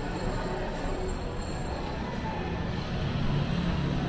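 Steady background hum of a shopping-mall walkway, with a low rumble of road traffic from the street ahead growing a little louder near the end.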